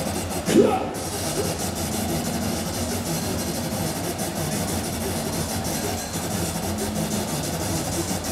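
A steady, low rumbling drone with a faint wavering tone and no beat, from a hardcore electronic music show's sound system, with a brief vocal fragment about half a second in.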